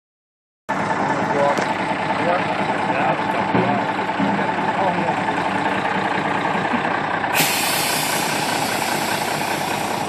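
Mack truck's diesel engine idling steadily, close by. About seven seconds in, a long steady hiss of air from the truck's air brake system starts up over the engine.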